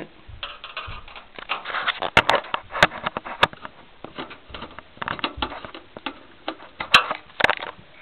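Phillips screwdriver tightening a power supply's mounting screw into a metal computer case: irregular scraping and clicking of metal on metal, with a few sharp clicks about two to three seconds in and again near the end.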